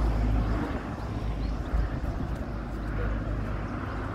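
Outdoor street background noise: a steady low rumble with a faint hiss over it.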